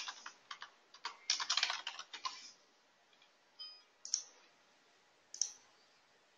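Typing on a computer keyboard, a quick run of keystrokes for about two and a half seconds, followed by three single mouse clicks spaced out over the rest of the time.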